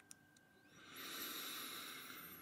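A man's long, soft breath out, close to the microphone, starting about half a second in and fading near the end.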